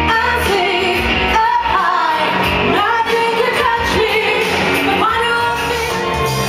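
A woman singing into a handheld microphone, her voice amplified over loud backing music in a large room.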